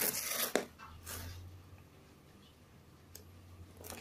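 Hands rubbing and scraping on a cardboard box: a noisy rustle at the start, a shorter one about a second in, and a single small click near the end, over a faint steady low hum.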